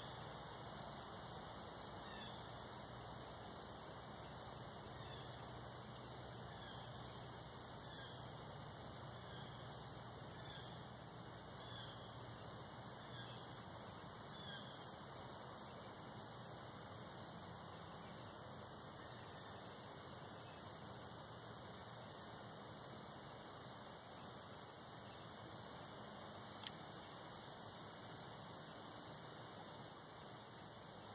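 Insects, crickets among them, trilling steadily at a high pitch. Over roughly the first third there is also a run of short chirps, repeated at an even pace.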